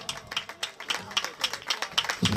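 Light, scattered applause from a small crowd: a few people clapping unevenly.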